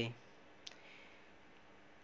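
A single sharp click about two-thirds of a second in, a marker tip tapping the paper while writing, against near silence.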